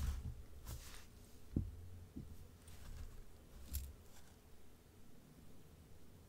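Faint handling noise: a few soft clicks and light knocks as crystal bead necklaces are moved and arranged on a fabric display bust, with quiet room tone between.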